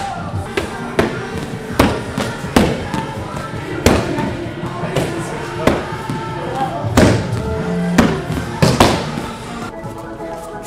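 Background music with about ten sharp, irregularly spaced slaps of kicks and punches landing on leather focus mitts.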